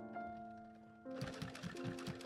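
Post-bed leather sewing machine with a roller presser foot stitching a boot upper: a quick run of stitches starts about halfway through, about seven a second, over background music.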